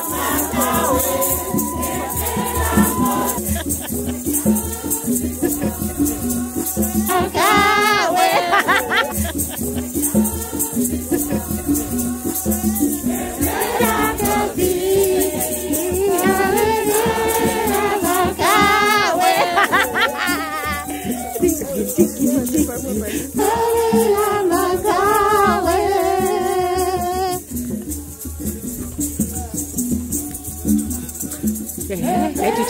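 A group of women singing a hymn together while walking in procession, with rattles shaken to a steady beat.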